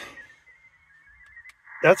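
Icom IC-7100 HF transceiver's speaker playing a faint digital data signal on 30 meters: a steady band of closely packed tones, someone else's Winlink session going through the gateway station.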